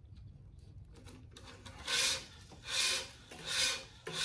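A tennis string being pulled by hand through the racquet's main strings while weaving a cross string, rubbing against the mains. It comes as three pulls, each about half a second long, starting about two seconds in.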